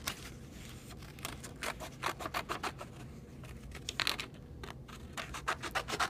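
Small scissors snipping through drawing paper: a run of short, irregular snips as the paper is turned and cut.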